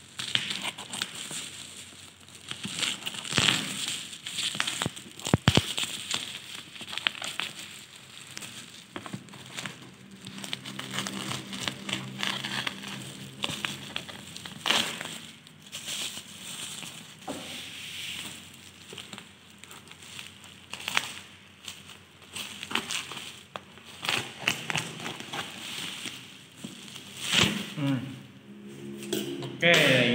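Black plastic bubble-wrap mailer being cut and torn open by hand, with irregular crinkling and crackling of the plastic and a few sharp clicks a few seconds in.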